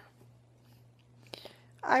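A pause in a woman's speech: quiet room tone with a low steady hum and a faint click a little past the middle, then her voice resumes just before the end.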